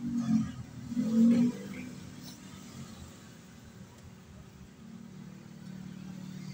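A low, steady motor-like hum with two louder swells in the first second and a half, then settling to an even drone.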